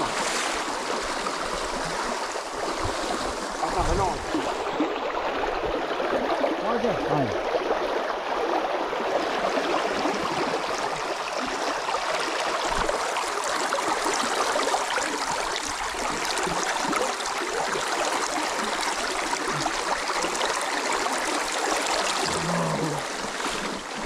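Shallow river water rushing steadily over a stony bed, with splashing from legs wading through the current and a few dull low thumps.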